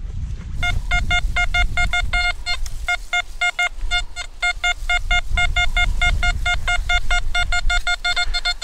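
XP Deus metal detector giving rapid short beeps at one steady pitch, several a second, as the coil sweeps over a buried target, which reads as an 82 on its display.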